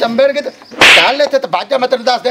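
A man speaking in a heated exchange, cut across about a second in by one short, sharp crack, a slap or stick-strike sound.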